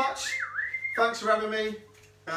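A high whistling tone that holds, dips in pitch about halfway through and glides back up, then cuts off. A man's voice follows briefly.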